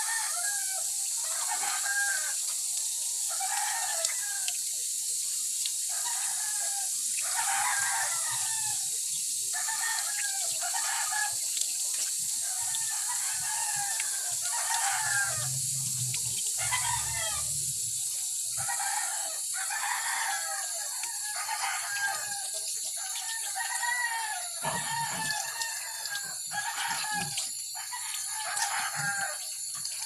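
Chickens calling over and over, about one call every second, over a steady high hiss, with a brief low rumble near the middle.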